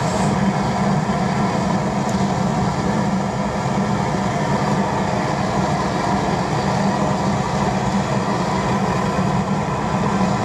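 Homemade waste oil burner, running horizontally on a mix of used engine oil and vegetable oil, burning with a loud, steady, unbroken rumble. It is running somewhat over-fuelled; the owner thinks he has flooded it a bit.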